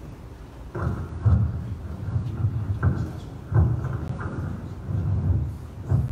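Handheld microphone handling noise: a run of dull, boomy bumps and rubbing rumbles as the microphone is taken up and gripped, about half a dozen knocks over a few seconds.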